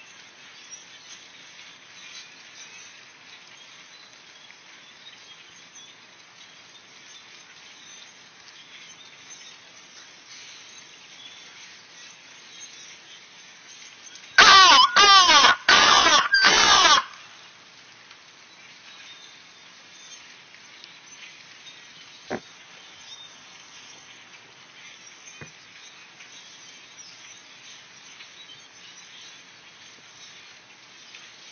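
Faint, steady calling of a flock of birds in the trees. About halfway through, a megaphone gives a loud, distorted blast of about two and a half seconds, in four short bursts with a wavering pitch. It does not scare the birds off.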